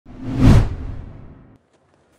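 Whoosh transition sound effect with a low rumble, swelling to a peak about half a second in and fading away by a second and a half.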